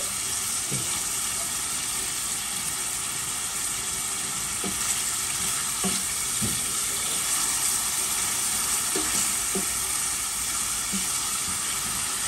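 Diced chicken and onion frying in oil in a stainless steel pan, a steady sizzle, stirred with a spatula. The chicken is at the stage of just turning white.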